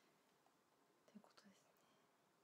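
Near silence: room tone, with a brief faint whisper a little over a second in.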